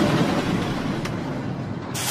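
Rushing, rumbling noise that slowly fades, with a sharp tick about a second in and a short whoosh at the end: the sound effect of the animated end logo.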